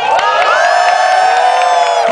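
Audience cheering and whooping, many voices holding long, high shouts together that swell and then tail off near the end.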